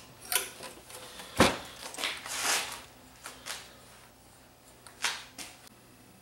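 Short hisses of aerosol contact cleaner sprayed into a cassette deck's level controls, mixed with knocks and clunks as the open metal chassis is tilted and set back down. The sharpest knock comes about a second and a half in.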